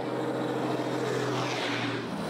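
Semi-trailer truck driving by on a highway: a steady diesel engine hum over tyre and road noise.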